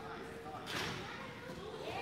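Faint voices of people talking in a large gym hall, with one brief noisy swish a little under a second in.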